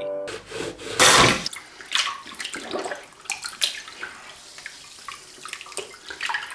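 Water from a tap splashing into a sink: a loud gush about a second in, then irregular splashing.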